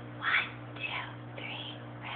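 A woman whispering three short words, about half a second apart, over a steady low electrical hum.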